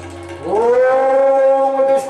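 A male singer's voice, amplified through a microphone, sliding up in pitch and then holding one long steady note.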